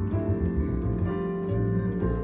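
Double bass plucked pizzicato, a line of low notes with a new note about every half second, played with piano accompaniment.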